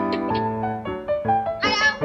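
A kitten meowing once near the end, over background piano music.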